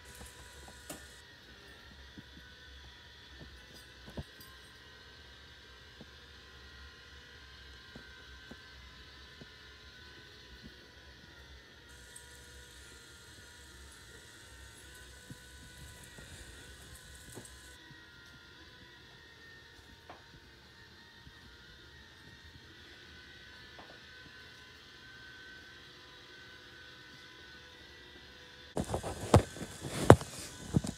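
Robot vacuum running with a faint, steady whir of several held tones over a low hum, with scattered soft clicks. Near the end, a few loud knocks and rustles.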